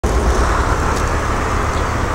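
Steady outdoor background noise with a strong deep rumble and no distinct events.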